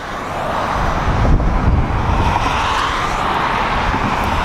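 Road traffic noise: a steady rushing of a passing vehicle's tyres and engine that swells about half a second in and holds.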